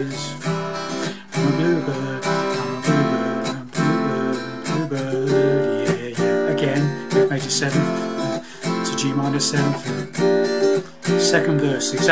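Acoustic guitar strummed with quick up-and-down strokes through a verse chord progression of minor seventh, C and F major seventh chords. The chord changes every couple of seconds, with a brief drop at each change.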